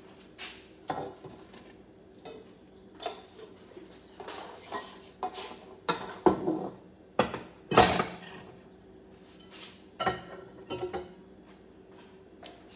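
Kitchen clatter: a string of knocks and clinks as dishes, utensils and containers are handled, loudest about six to eight seconds in, over a faint steady hum.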